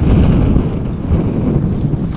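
Wind buffeting the camera microphone outdoors, a loud, steady low rumble.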